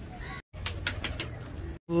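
Domestic pigeons cooing, with a few sharp clicks among them. The sound cuts out completely twice, briefly.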